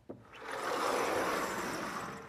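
A brief tap, then a steady rubbing swish lasting about a second and a half, from work at a lecture-hall blackboard.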